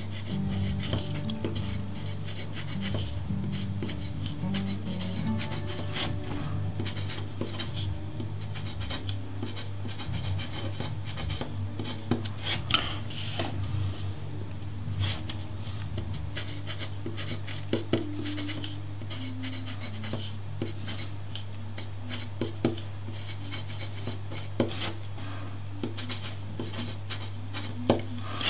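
Italic fountain pen with a square nib scratching and rubbing across paper as words are written, with small clicks here and there. A steady low hum runs underneath.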